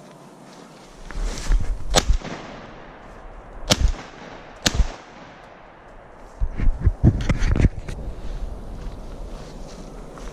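Pump-action shotgun fired three times, about two, three and a half and four and a half seconds in, each a sharp crack. A cluster of knocks and rustling comes around seven seconds in.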